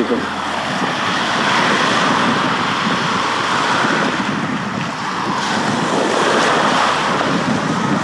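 Small lake waves washing up and breaking on a sandy beach, a steady rushing wash that swells and eases, mixed with wind on the microphone.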